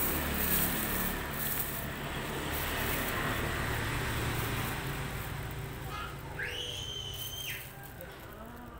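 Clear plastic sack liner rustling and crinkling as hands work into a sack of lumpy grey aluminium paste. Near the end a high, steady whistle-like tone is heard for about a second.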